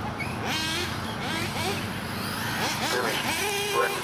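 A 1/8-scale RC buggy running on the track, its motor whine falling away about half a second in and rising again near the end, with voices in the background.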